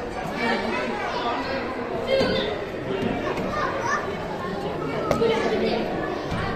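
Background chatter of visitors, with children's voices and shouts mixed in, echoing in an enclosed hall.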